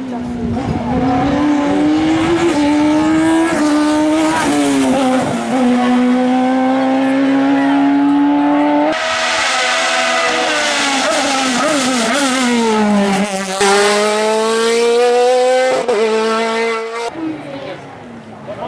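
Sports prototype race car engine at full throttle, its pitch climbing and stepping with each gearchange. The engine note falls for a few seconds as the car slows for a chicane, then climbs hard again as it accelerates past, and drops away suddenly near the end.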